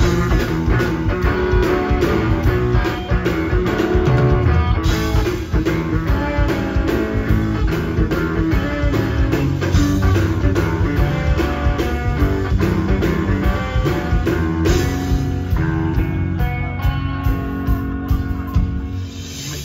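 Live rock band playing an instrumental passage: electric guitar leading over a drum kit.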